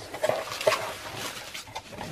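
Bubble wrap crinkling and crackling as a bubble-wrapped package is lifted out of a cardboard shipping box, the plastic rubbing against the cardboard with a few sharp crackles and brief squeaks.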